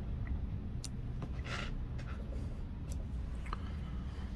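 Small fly-tying scissors snipping the corners off foam on a fly: a few short, sharp clicks over a steady low hum.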